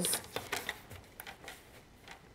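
A sheet of patterned paper sliding and being pressed into place on a paper trimmer's board: a short rustle and a few light clicks at the start, then a few faint ticks dying away.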